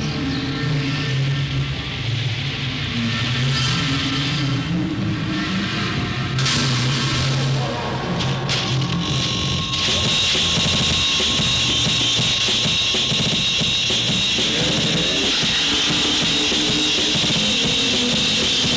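Experimental noise music: shifting low droning tones, then about ten seconds in an abrupt switch to a loud, steady wall of harsh noise with a strong high band.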